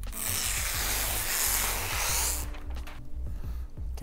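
Crisp rustling of a stiff sheet of black twill appliqué fabric being handled and peeled back at one corner by hand. It lasts about two and a half seconds and then stops, over quiet background music.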